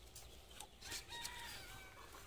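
A rooster crowing once, faintly, a single held call of about a second starting about halfway in and dropping slightly at its end.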